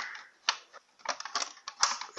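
Plastic top cover of a Singer Precisa sewing machine clicking as it is handled and seated into place: one sharp click about half a second in, then a quick run of small clicks and taps in the second half.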